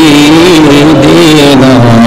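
A man's voice singing one long held note that wavers slowly up and down in pitch, in the style of a devotional chant.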